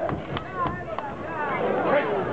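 Excited shouting from ringside voices, with three sharp smacks of boxing gloves landing about a third of a second apart in the first half.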